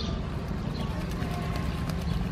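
A fulvous whistling duck bathing, splashing its wings and body in pond water in a quick run of splashes starting about half a second in, with small birds chirping in the background.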